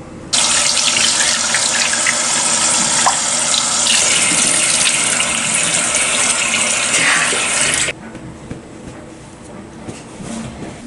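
Bathroom sink tap running hard, water splashing into the basin while a face is rinsed by hand after a sheet mask; the tap is shut off abruptly about eight seconds in.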